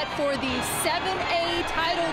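A voice speaking, with music underneath.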